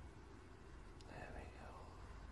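Near silence with a low steady hum. About a second in comes a faint click, then a brief soft whisper.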